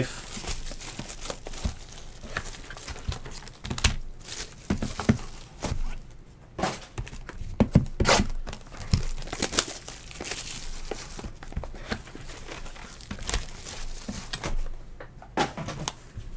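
Plastic shrink wrap on a trading card box crinkling and tearing as it is peeled off and slit with a knife, with irregular scratches, taps and scrapes from handling the cardboard box.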